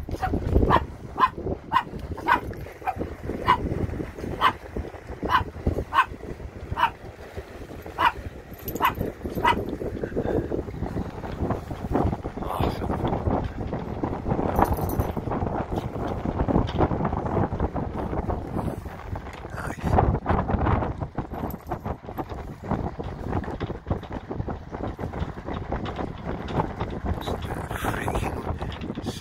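A small dog yapping in short, high yips, about two a second, for the first ten seconds or so, then stopping. After that only a steady rush of wind on the microphone and water.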